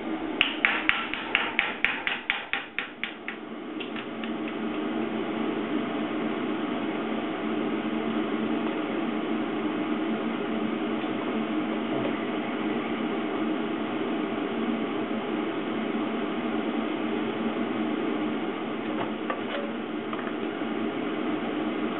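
A hand hammer striking sheet metal: about fifteen rapid blows, some five a second, in the first few seconds. Then a steady, even hum for the rest.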